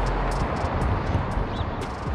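Steady rushing outdoor background noise with an unsteady low rumble, with a short high chirp about one and a half seconds in.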